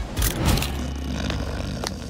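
Scene-transition sound effect: a few quick clicks at the start, then a steady low rushing whoosh.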